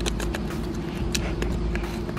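Small toy digging tools tapping and scraping at a wetted plaster dig brick on a paving stone, a few short sharp clicks, with a steady low hum underneath.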